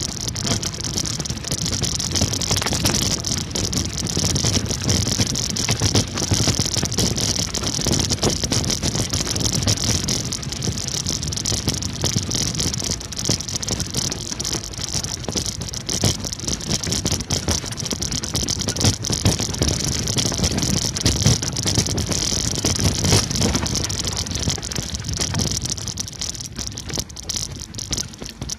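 Wheels rolling fast over loose rock and gravel: a continuous crunching rattle of stones under the tyres, with wind hiss on the microphone. It eases off near the end.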